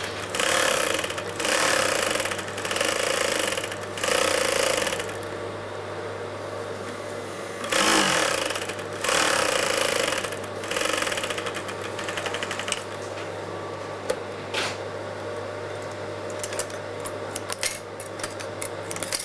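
SGGEMSY industrial sewing machine stitching red tulle in a series of short runs of about a second each, most of them in the first eleven seconds, with quieter stretches between.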